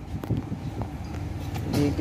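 Steady low hum of a Toyota Prado idling, heard inside the cabin.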